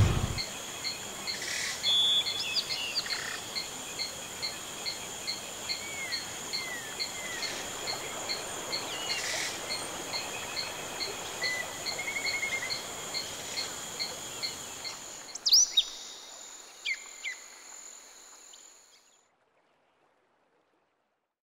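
Birds chirping outdoors, with a high short call repeating about twice a second and scattered other chirps. Two louder sweeping chirps come near the end, and then the sound fades out.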